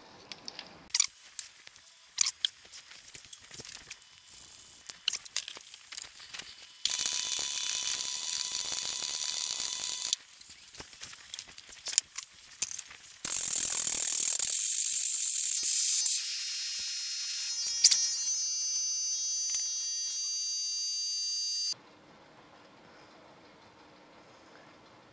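Electric welding arc laying a bead on a steel tube of an early Ford rear axle assembly, in two runs of about three and eight seconds that start and stop abruptly, with clicks and taps between. The bead's shrinkage is being used to pull the tube straight and cut its runout.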